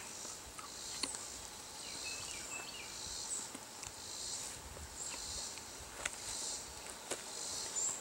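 Quiet summer-woods ambience: insects buzzing steadily in a high register, with a few faint soft clicks of chewing as raw sinew is moistened in the mouth.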